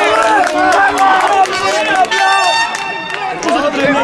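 Several voices shouting and calling over each other on an outdoor football pitch, with a steady high-pitched sound held for about a second midway.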